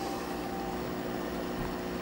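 A steady machine hum with a faint whine held on one pitch, even in level throughout.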